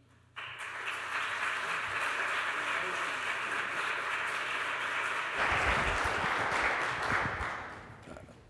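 Audience applauding. It starts just after the opening, grows slightly louder past the middle, and dies away near the end.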